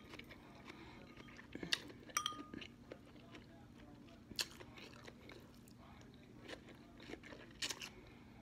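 Quiet close-up eating of instant noodles: soft chewing and mouth noises, with a few sharp clicks scattered through.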